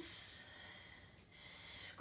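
A woman breathing audibly, two faint breaths: a short one right at the start and a longer one in the second half.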